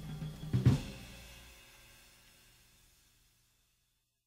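The close of a 1960s soul-jazz band recording: the last held chord dies away, the drum kit plays two quick closing hits with a cymbal about half a second in, and the cymbal rings out and fades to silence within about three seconds.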